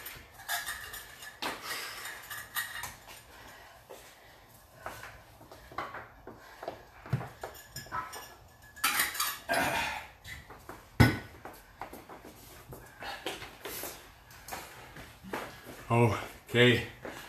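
Scattered clinks and clatters of hard objects being handled, irregular and short, with one sharp, louder knock about eleven seconds in.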